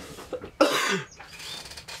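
A man coughs once, about halfway through, over the light scraping and rustling of a cardboard game box being handled on a table.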